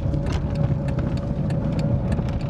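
Small car's engine and road noise heard from inside the cabin of a Fiat Cinquecento on the move: a steady low rumble with a faint steady hum and scattered light clicks and rattles.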